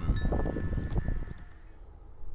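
A light chime-like metallic ringing that fades away over about a second and a half, with a little handling noise.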